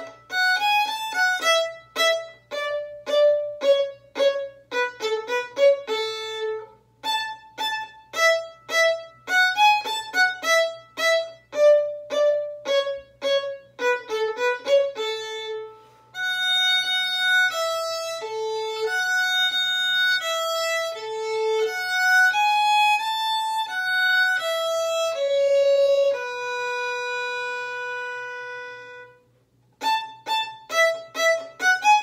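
Solo violin playing a melody in short, detached staccato bow strokes for about the first half, then changing to smooth, long legato notes joined one into the next, which stop shortly before the end.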